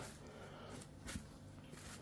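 Faint rustling of plastic cling film being stretched and pressed down over a plate, with a couple of soft crinkles about a second in.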